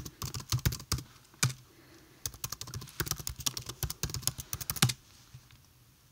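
Typing on a computer keyboard, entering an Apple ID login: quick runs of keystrokes, a brief lull in the second second, a longer run, then the keys stop about a second before the end.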